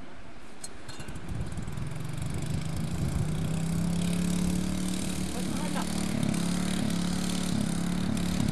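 Small engine-driven water pump comes up to speed about two seconds in, then runs steadily, pumping river water through its hose.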